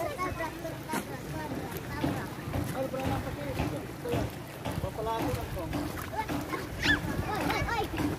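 Children's voices chattering and calling out as they play in the water, over a low rumble of wind on the microphone.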